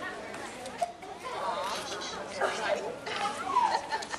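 Indistinct, overlapping chatter of children's and adults' voices.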